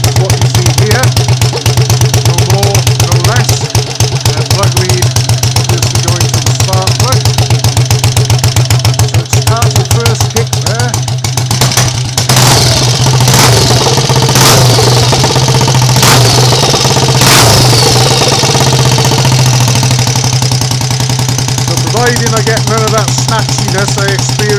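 Triumph Tiger Cub's single-cylinder four-stroke engine idling with a fast, even beat, running with no battery, its electrics fed straight from the alternator through a regulator/rectifier. After about twelve seconds the running smooths out and several sharp clicks are heard over it.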